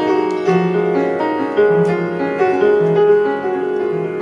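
Upright piano played live, a melody over a bass line of held low notes that change about once a second.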